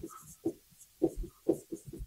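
Dry-erase marker writing on a whiteboard: a string of short strokes, about one every half second, as letters are drawn.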